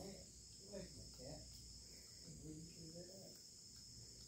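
Faint, steady high-pitched chorus of crickets.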